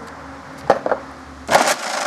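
Drill-driven wooden spiral launcher spinning with a steady hum, then a sharp click a little under a second in and a loud crack about a second and a half in, as a 25 mm steel ball is shot and strikes the wooden board in front of the catch box.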